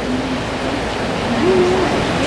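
Steady rush of flowing creek water, an even hiss that fills the sound, with a man's voice faintly over it now and then.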